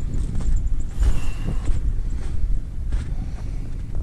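Wind buffeting the microphone outdoors in snow country: a low, uneven rumble with a light hiss above it.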